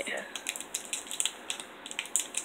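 Foil wrapper of a Pokémon booster pack crinkling and crackling in the hands as it is worked open, a quick irregular patter of small crackles.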